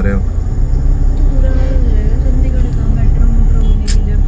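Steady low rumble of a car's engine and road noise, heard from inside the cabin while moving slowly in heavy traffic. A single sharp click comes just before the end.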